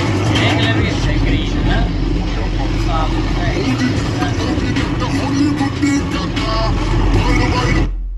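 Tractor engine running with a steady low drone, mixed under a song with a voice singing. Both start and stop abruptly at clip cuts.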